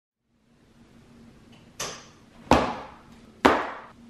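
Three heavy clunks with an echoing fade after each, the first lighter and the last two loud, about two thirds of a second apart, over a faint steady hum.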